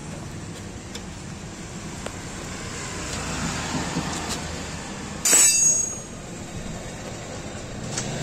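Steady background noise with a few faint clicks, then one loud metallic clank with a short ring about five seconds in: a tool or metal part knocking against metal during motorcycle rear-wheel work.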